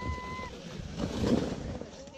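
Plastic sled sliding over snow: a steady, rough hissing scrape of its base on the snow.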